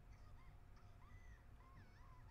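Near silence: faint short chirping notes, about a dozen quick rising and falling calls, over a low steady hum.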